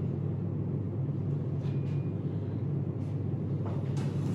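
Steady low background hum of room tone, with a faint rustle of movement near the end.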